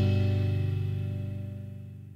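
The final chord of an indie rock song, guitar among the instruments, rings out and fades away steadily.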